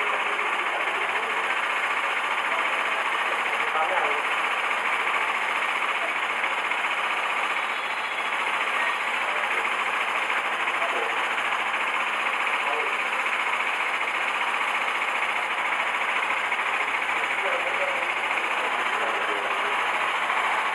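Steady hubbub of a crowd of people talking at once, with no single voice standing out.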